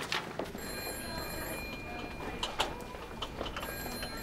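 Telephone ringing: two rings about three seconds apart, each lasting about a second, the first about half a second in and the second near the end, over a low background bustle.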